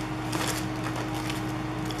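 Sticker sheets on plastic-backed paper being handled and shuffled on a desk, with soft rustling and a couple of light taps over a steady low hum.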